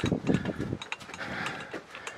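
Rapid, irregular clicking and rattling, with a low rumble in the first second.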